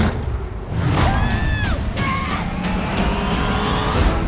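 An old station wagon's engine revving hard, with a high squeal that rises and falls about a second in, mixed over loud trailer music with sharp hits.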